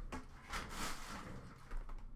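Faint rustling and scraping of hands handling a cardboard trading-card box, with a few soft brushes and knocks.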